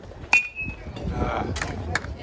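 A metal baseball bat hits a pitched ball: one sharp ping with a brief metallic ring.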